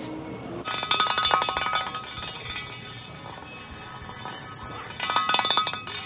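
Metal garden tool dragged and clattering across a concrete floor, in two rattling, ringing bursts: one about a second in and one near the end.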